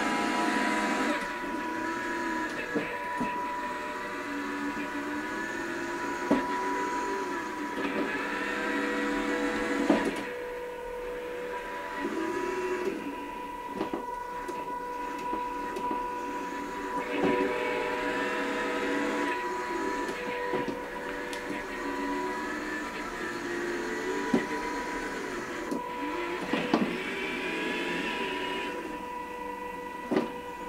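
Small electric gear motors of a wheeled robot whirring as it drives, stops and turns, their pitch rising and falling with each change of speed, over a steady high whine. A few sharp knocks come through, about ten seconds in and again later.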